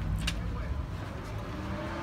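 A single sharp click about a third of a second in as a glass shop door is pulled open, over a low steady rumble.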